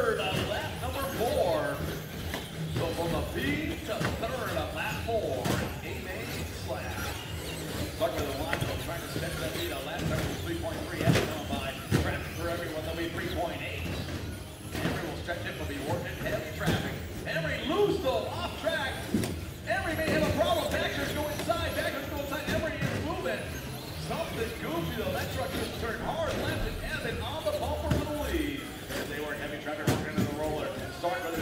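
Voices talking in a large hall, with repeated thuds and knocks from radio-controlled short-course trucks landing jumps and striking the track.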